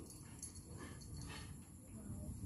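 A dog making a few faint, short sounds about a second in, over a steady low background rumble.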